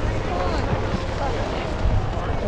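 Wind rumbling on the camera microphone, under the chatter of a group of people talking.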